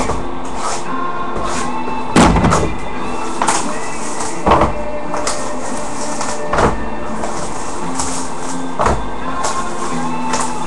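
Background music plays throughout, with a thud about every two seconds as shrink-wrapped cardboard boxes of trading cards are handled and set down. The loudest thud comes about two seconds in.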